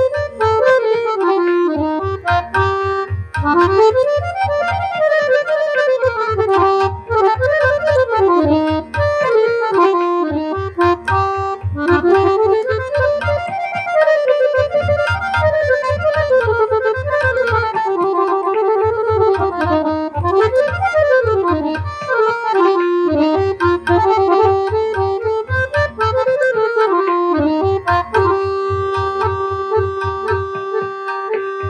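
Harmonium played solo, its reeds carrying a Hindustani melody in fast runs that rise and fall, with held notes between them. A low pulsing sound runs underneath and breaks off about every four seconds.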